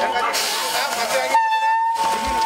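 A train horn held on one steady tone, over a crowd of people talking. Near the end the voices drop away and only the horn is left.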